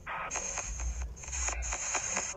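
Ghost-box (spirit box) app playing from a smartphone's speaker: rapid, choppy bursts of static and radio-like sound fragments, broken up many times a second, with a low rumble through the middle.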